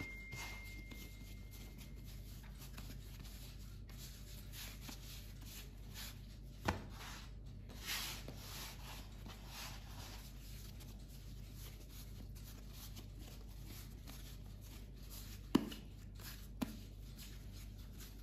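Hands rounding pizza dough into balls on a wooden board: faint rubbing of dough against the wood, with three short light knocks about seven seconds in and near the end.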